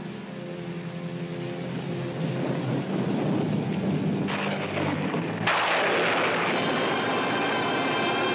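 Dramatic film sound effect of a rumbling blast like thunder, building for a few seconds and breaking into a loud crash about five and a half seconds in, over dramatic orchestral music.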